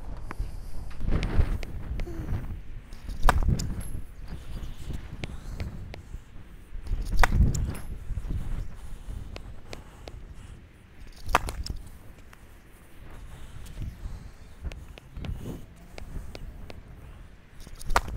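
Tennis serves: four sharp racket-on-ball strikes, the first three about four seconds apart and the last near the end, with wind rumbling on the microphone in between.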